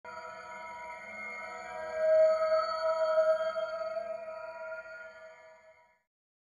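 Electronic intro sting: a held, synthesized chord of several steady tones that swells about two seconds in, then fades out.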